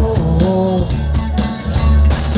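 A live rock band playing, with electric guitars and a drum kit over a steady low bass, recorded loud from the crowd.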